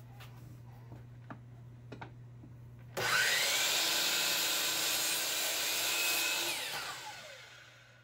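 DeWalt sliding compound miter saw switched on about three seconds in, cutting an angled end through a walnut board. The blade runs loudly and steadily for about three seconds, then the trigger is released and it winds down with a falling pitch. A few light knocks come first as the wood is set in place.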